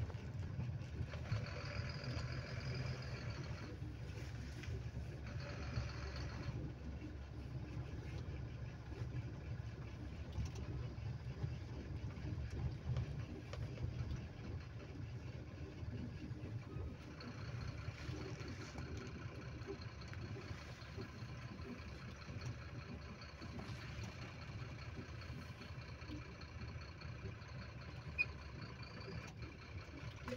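Engine running steadily with road noise, heard from a moving vehicle driving a winding mountain road behind a truck; a faint high steady whine joins about halfway through.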